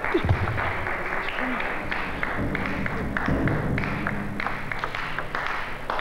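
Crowd of spectators applauding a point won in a table tennis match: dense clapping with some low crowd noise underneath.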